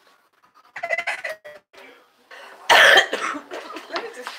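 A woman coughing once, loud and close to the phone's microphone, about three-quarters of the way in, after a brief vocal sound and a moment of near silence.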